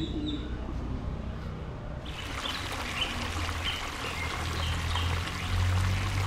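Small birds chirping in short repeated calls over a steady water-like hiss that starts suddenly about two seconds in, with a low rumble underneath.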